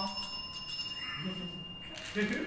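A high, steady ringing tone, like a small chime or electronic alert, held for nearly two seconds and stopping near the end, with faint voices under it.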